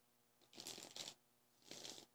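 A deck of tarot cards being shuffled, faintly: two short bursts of shuffling, the first about half a second in and the second near the end.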